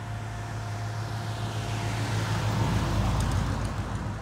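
Old pickup truck driving past with a steady low engine hum, growing louder as it passes about two to three seconds in.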